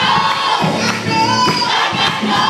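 Youth gospel choir singing loudly, with the congregation's voices and shouts mixed in.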